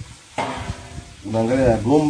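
A crackly, scraping noise starts about half a second in, and an unclear voice joins it in the second half.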